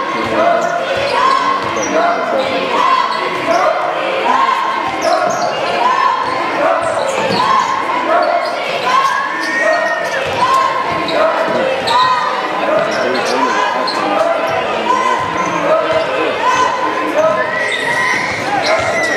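A basketball being dribbled on a hardwood gym floor during a game, with voices and calls ringing through the large hall throughout.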